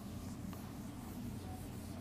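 A whiteboard eraser wiping across a whiteboard: faint rubbing strokes over a low, steady room hum.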